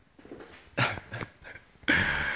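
A man laughing in short breathy bursts, with a louder burst near the end.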